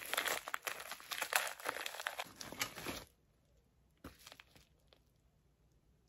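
A small plastic packaging bag crinkling and tearing as it is pulled open by hand, a dense run of crackles for about three seconds. After that it goes quiet, with a brief faint crinkle about a second later.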